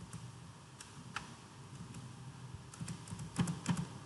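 Computer keyboard keystrokes: a couple of single taps about a second in, then a quick run of taps near the end.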